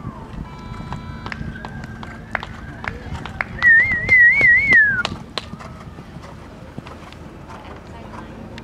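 A loud warbling whistle about halfway through: it wavers up and down around one pitch for about a second and a half, then falls away. A fainter, steadier whistle comes before it, with scattered short clicks throughout.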